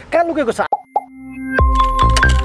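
A man's speech breaks off, followed by a short plop sound effect and the start of an electronic outro jingle that swells up in level with a low thump and steady bell-like tones.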